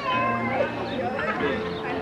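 Live conjunto music: a diatonic button accordion holds sustained notes over a bajo sexto and electric bass, with short sliding, voice-like tones over the top.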